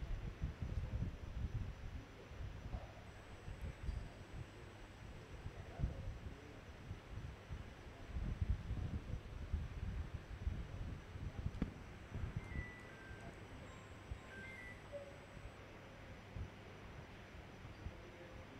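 Open-air ground ambience with irregular low wind rumble buffeting the microphone, and a few faint short high-pitched tones about two-thirds of the way through.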